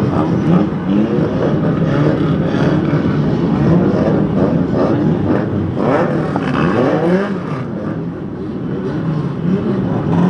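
A pack of banger racing cars' engines running and revving together on a rolling lap. Many engine notes rise and fall over one another.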